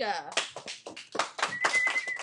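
A class of students clapping in scattered, uneven claps, with a short high steady tone sounding near the end.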